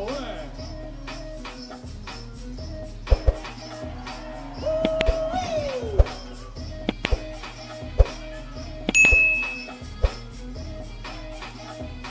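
Hip-hop breakbeat music over the battle's sound system, with a steady beat, a few sharp hits and a drawn-out sliding sound near the middle.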